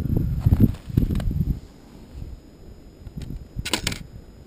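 Handling noise from adjusting a small wire-and-wood trap trigger (a stripped mousetrap's dog and pan): irregular low knocks and rumble in the first second and a half, then quieter, with a quick burst of sharp metallic clicks near the end.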